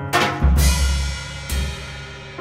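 Live drum kit and electric keyboard playing together. A cymbal crash with a bass drum hit comes about half a second in, and another drum hit follows near the end, over ringing keyboard chords.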